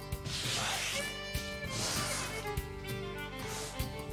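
Background music with held notes, over the swishing strokes of a scouring pad scrubbing grime off a wooden tabletop, two long strokes then a fainter one.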